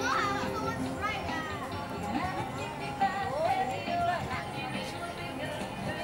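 Children's and adults' voices calling and chattering over background music.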